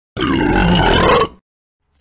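A loud belch, one drawn-out burp of about a second.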